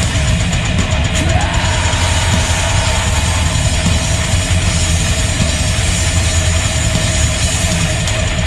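Heavy metal band playing live, with distorted electric guitars, bass and a drum kit running on together at full loudness.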